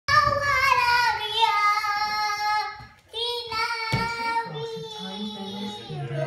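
A young girl singing two drawn-out phrases, the first sliding down in pitch, with a short break between them about halfway through. A single thump sounds shortly after the second phrase begins.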